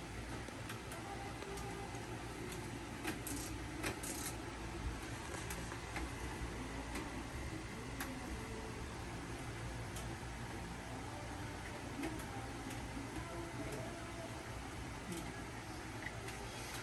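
Light clicks and small knocks from plastic shelf brackets being handled and fitted on a metal tension pole, a few sharper clicks close together about three to four seconds in, over a steady low hum.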